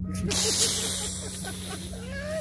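Liquor poured from a bottle into an open drink can, with a loud fizzing hiss that starts suddenly, peaks within the first second and slowly dies away.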